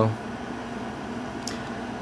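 Steady background hum of room noise, like a fan or air conditioner running, with one faint click about one and a half seconds in.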